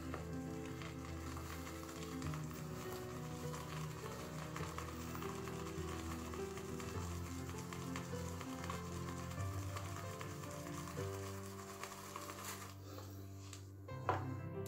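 A shaving brush whipping soap lather in the ridged bowl of a travel shaving scuttle: a soft, wet, fizzing crackle that dies away near the end. Quiet background music with held notes plays under it.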